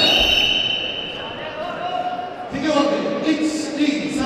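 A single struck bell rings out with a sharp strike, its high ring fading over about a second. Voices call out from about halfway through.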